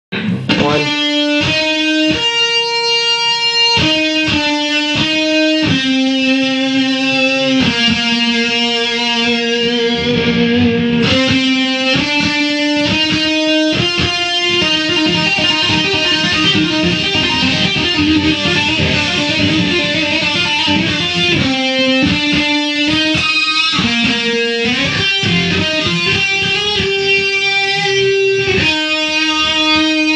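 ESP electric guitar played solo: held single notes and short phrases, with a stretch of fast two-handed tapping in the middle.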